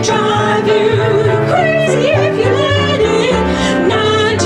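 Two women singing a duet into microphones with piano accompaniment, holding long notes with a wide vibrato.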